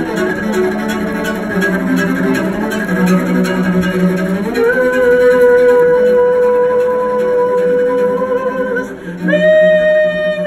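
Live solo cello with wordless singing. About halfway through, a note rises and is held long and steady. Near the end, after a brief dip, a new note starts and slides downward.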